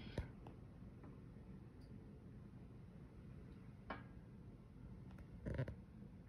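Near silence: quiet room tone, broken by a sharp click just after the start, a faint tick about four seconds in and a brief soft noise near the end.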